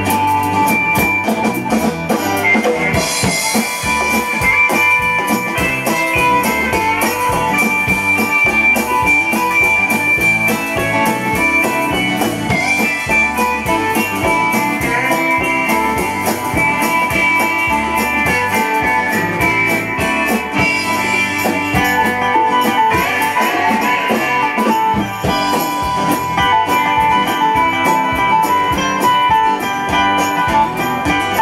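A live band playing an instrumental break: drums, electric bass and strummed acoustic guitars, with a lead instrument holding long high notes over them.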